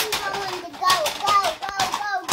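A young child's high voice, vocalising without clear words, with a couple of sharp knocks near the end.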